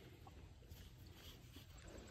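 Near silence: faint outdoor background with a low rumble and a few tiny clicks.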